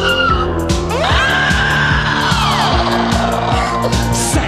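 Synth-pop played live on synthesizer over a steady electronic drum beat, with no singing. About a second in, a long high tone slides up, holds, and then slides down.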